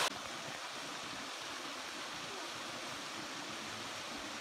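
Small waterfall falling in thin streams over a rock ledge into a pool, making a steady, even rush of water.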